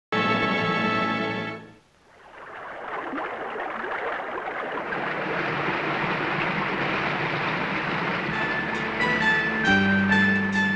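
A held musical chord sounds for about a second and a half and cuts off. Then a steady rush of falling water from a waterfall swells up, and music notes enter near the end.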